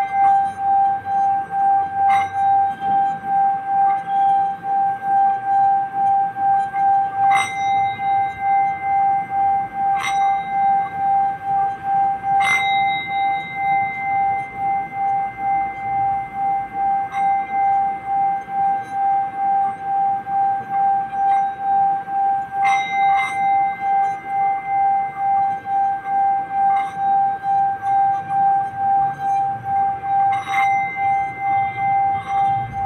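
Singing bowl ringing with one steady tone that wobbles about twice a second, with a bright fresh strike every few seconds.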